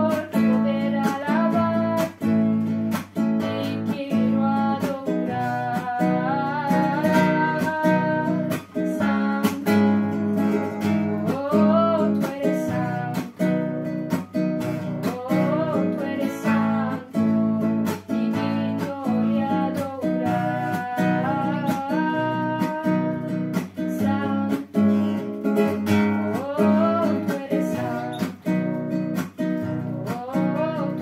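Acoustic guitar strummed in a steady rhythm, accompanying a girl singing a Spanish praise song.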